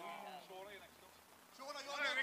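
A voice making a drawn-out, wavering exclamation in reaction to a crossbar challenge shot, trailing off within the first second. Talking starts again near the end.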